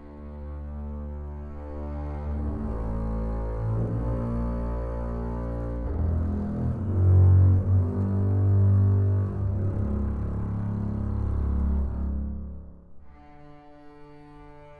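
Sampled ensemble of three double basses playing legato sustained notes in a slow, low moving line. The notes swell loudest about halfway through and fade away shortly before the end.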